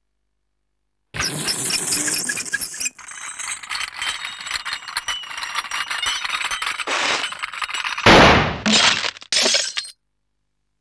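Cartoon sound effects: a long, shrill scraping screech like something dragged across a blackboard, followed near the end by loud glass shattering and tinkling in several crashes.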